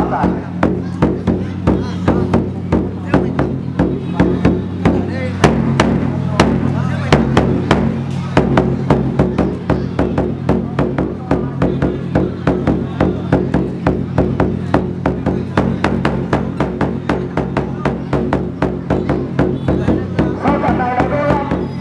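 Music with steady, evenly spaced drum beats, about three a second, over sustained low tones.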